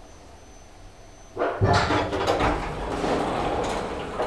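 Lift car's automatic sliding doors opening at a landing, starting suddenly about a second and a half in and running with a loud, rattling sweep for close to three seconds.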